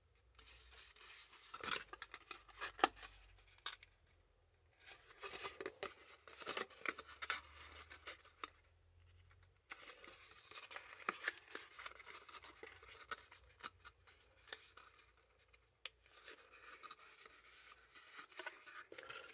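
Stiff black cardstock being folded and pressed together by hand. It makes faint, irregular rustling and scratching with small sharp clicks, in several bursts separated by short pauses.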